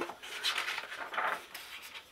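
A page of a hardcover picture book being turned by hand: paper sliding and rustling in a couple of soft swishes.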